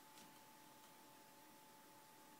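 ASUS G73 laptop's cooling fans running very quietly: a faint steady whir with a thin steady tone, which the owner takes to mean the machine is not running very hot.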